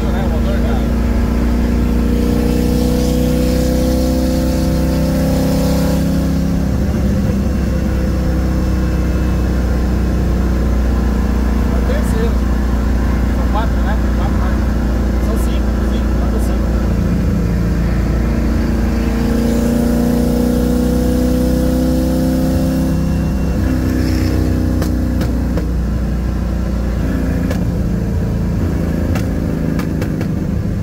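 Ford Maverick's engine heard from inside the car at freeway speed, a steady drone over road noise, its note rising and easing twice, in the first few seconds and again around twenty seconds in.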